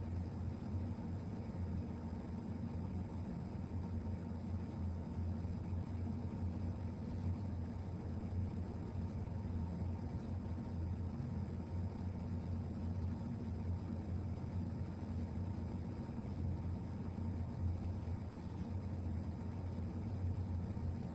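Steady low hum with a faint hiss: room background noise of the recording, with no distinct events.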